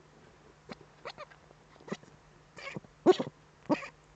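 Eurasian eagle-owl at its nest giving a series of about six short, sharp calls, the later ones louder.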